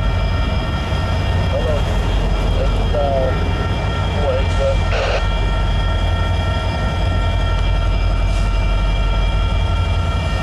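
Union Pacific diesel-electric freight locomotives working under load as the train gets moving, a steady heavy low rumble with a constant whine on top.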